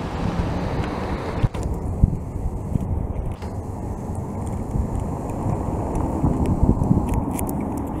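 Steady low rumble of nearby road traffic, with a few light knocks scattered through it.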